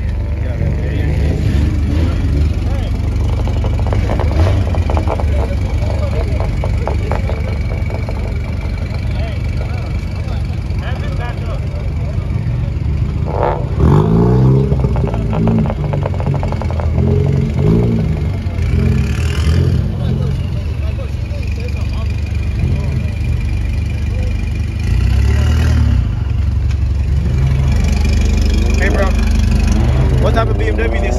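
Car engines running with a steady low rumble, revved up and down about halfway through and again near the end, with people's voices around.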